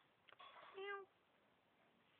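A domestic cat giving one short meow about a second in, just after two faint clicks.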